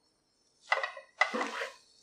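A metal utensil scraping and clattering against a metal cooking pan as stir-fried noodles are stirred: two strokes about half a second apart, each with a brief metallic ring, starting about two-thirds of a second in.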